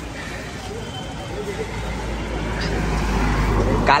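Road traffic passing on a busy street: a steady low rumble of vehicles that grows louder over the last couple of seconds, with faint voices in the background.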